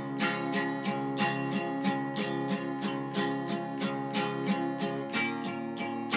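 Acoustic guitar with a capo strummed in a steady rhythm, about four strokes a second, between sung lines of a folk song; the chord changes about five seconds in.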